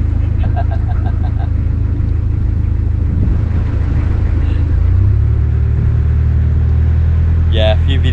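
Narrowboat's inboard diesel engine running steadily under way, a low continuous drone; about five seconds in its note grows a little louder and steadier.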